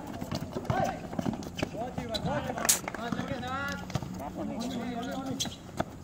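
A basketball bouncing and players' sneakers running on an outdoor concrete court, irregular hard knocks with one sharp smack near the middle, while players shout.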